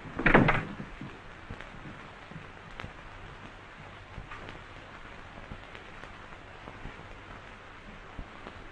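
A door bangs shut about half a second in, then a steady hiss of an old film soundtrack with a few faint clicks.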